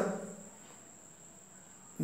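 A faint, steady high-pitched tone holds unbroken in the background of a quiet room, with a man's voice trailing off at the start.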